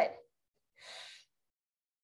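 A woman's single short audible exhale about a second in, a breath out timed with a seated leg extension.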